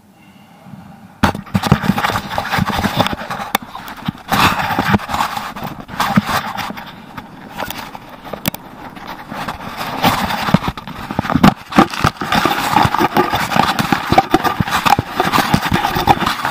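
Fabric rubbing and knocking directly against an action camera's microphone: a loud, irregular scraping and rustling full of sharp knocks and crackles, starting suddenly about a second in.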